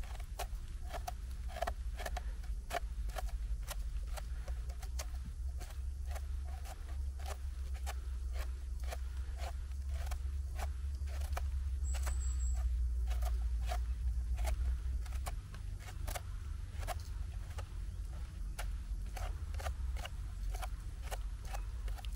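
A small knife scraping soil off the stem of a freshly picked cep (Boletus edulis) in many short strokes, about two or three a second, with a low rumble underneath.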